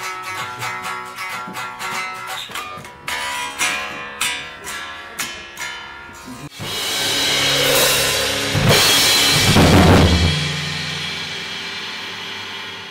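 Hard rock band playing in the studio on drum kit, electric bass and guitar: a riff of sharp, rhythmic hits, then about six and a half seconds in a big held ending with crashing cymbals and a ringing chord that slowly fades out.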